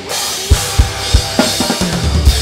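Acoustic drum kit played in a metal drum cover over the song's recorded track: after a brief break, a cymbal crash rings out with single bass drum strokes about every third of a second, then the hits grow busier near the end.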